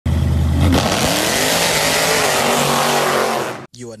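Supercharged 6.2-litre Hemi V8 of a Jeep Grand Cherokee Trackhawk running loud under heavy throttle, with a dense exhaust rush. Its pitch rises about a second in. It cuts off abruptly just before the end.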